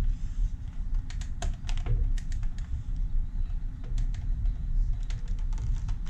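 Parts of a pump-action kit for a Nerf blaster being snapped together by hand: a run of irregular light clicks and taps, thickest in the first couple of seconds, over a steady low hum.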